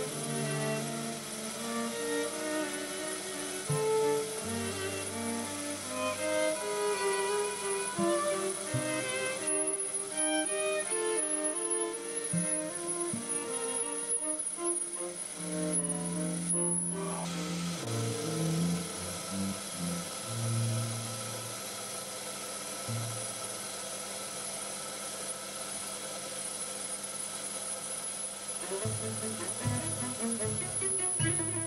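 Background music: a string trio of violin, viola and cello playing a lively classical divertimento, with notes changing constantly.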